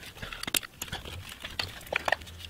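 Scattered small plastic clicks and knocks as electrical connectors are unplugged from ignition coil packs, each freed by squeezing its tab and pulling it off.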